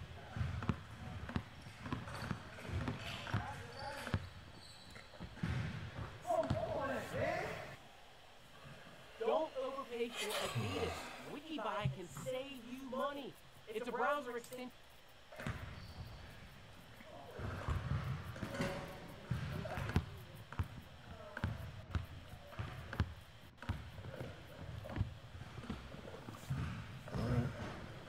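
A basketball being dribbled again and again on an indoor court, a run of short thuds, with a voice talking over part of it.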